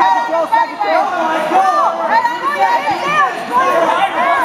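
Many voices talking and shouting over one another: crowd chatter from spectators and coaches around a grappling match.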